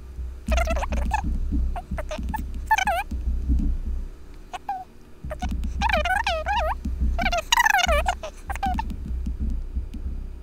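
Speech played back at double speed: high-pitched, chattering bursts of sped-up talk, broken by short pauses.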